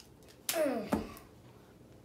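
A child's voiced sound effect, a short cry of about half a second that falls steeply in pitch over a hissy edge, ending in a sharp knock as one wrestling action figure is slammed down during play.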